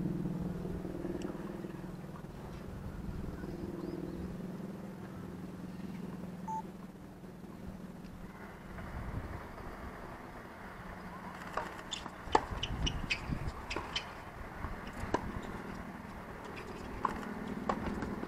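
Tennis rally on a hard court: a string of sharp pops from racket strings hitting the ball and the ball bouncing, over several seconds in the second half, the loudest about twelve seconds in. A steady low hum sounds in the first half.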